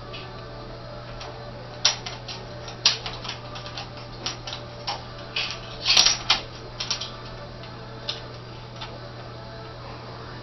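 Irregular clicks and scrapes of a small cap being batted about under a stove by a cat's paw, with a quick cluster of taps around the middle. A steady low hum runs underneath.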